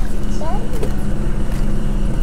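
A motor vehicle engine idling steadily, a low hum. A short high voice rises and falls about half a second in.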